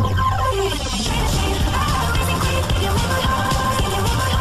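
Loud electronic music playing continuously.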